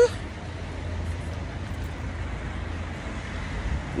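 Steady street traffic noise: an even background hiss over a low rumble, with no distinct events standing out.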